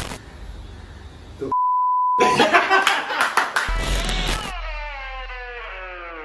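A steady high electronic bleep held for well under a second, followed by a clatter of sharp clicks and voices. Then comes a sound effect of several tones sliding downward in pitch together.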